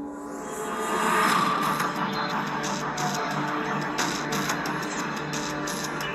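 Background music with sustained, held notes.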